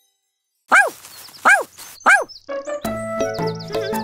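Silence, then a cartoon puppy barking three times, each bark rising and falling in pitch. A children's song intro starts just after the barks.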